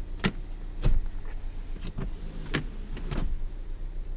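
A Ford Escape's split second-row seatback is being folded down flat. It gives a series of sharp clicks and knocks from the release latch and the seat moving, the loudest a heavy thump about a second in, over a steady low hum.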